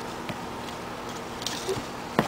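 A few faint taps and rustles of a hand handling a piece of wood on wood-shaving bedding, over a steady low hum.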